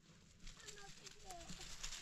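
Gritty crunching and scraping that builds from about a second and a half in, as a stone roof roller is dragged across a packed-earth roof. Faint voices or animal calls come before it.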